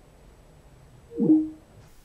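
Skype for Web's call-ended tone: one short falling electronic tone about a second in, as the call hangs up.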